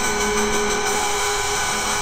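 Suno-generated electronic instrumental in a stripped-down passage with the heavy bass and drums out, leaving a steady, buzzing, drill-like synth tone.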